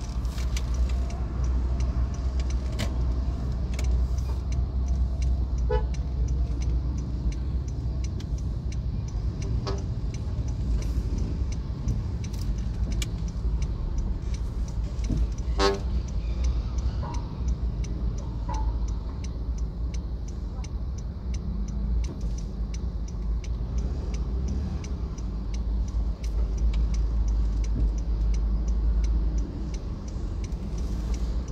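Slow stop-and-go road traffic heard from inside a car: a steady low engine and road rumble, with several short horn toots from the vehicles and motorcycles around it, the clearest about a third and halfway through.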